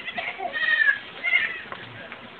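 A goat bleating twice: a longer call, then a shorter one about a second later.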